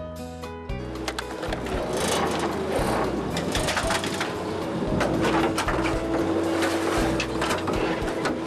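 Background music fading out, giving way to the working sounds of a small fishing boat underway: a steady wash of engine and water noise with frequent knocks and clatter of gear on deck.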